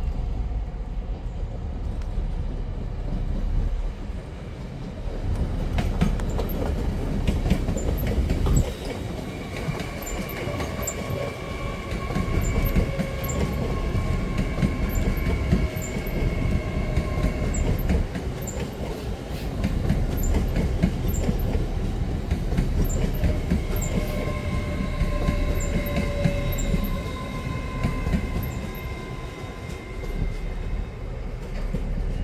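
LNER Azuma (Hitachi Class 800-series) train running past close by: low rumble of wheels on rail with clickety-clack over the joints. A steady electric whine from the traction equipment comes in twice, each time for several seconds.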